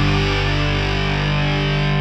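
Blues-rock album track with a distorted electric guitar chord held and ringing steadily, without vocals.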